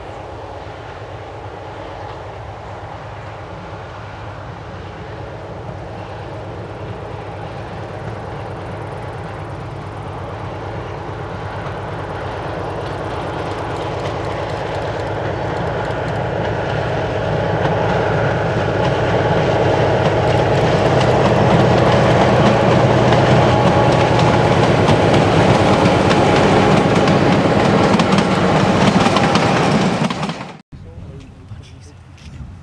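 A narrow-gauge diesel railcar approaching and running past, its engine and wheels on the rails growing steadily louder and loudest in the last third.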